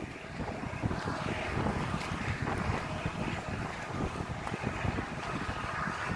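Wind buffeting a phone's microphone: a steady, uneven rumbling noise with no distinct events.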